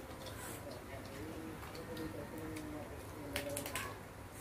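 Eating at a table: soft clicks and rustles of plastic cutlery and paper takeout boxes, a cluster of sharper clicks near the end, over a steady low hum, with faint short, level-pitched notes in the background.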